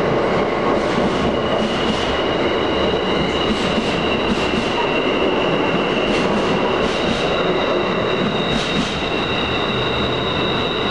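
Amtrak passenger train's stainless-steel Amfleet cars rolling past in an underground station, departing. A steady loud rumble carries a high-pitched wheel squeal that sets in a couple of seconds in, and short wheel clicks over rail joints come every second or so.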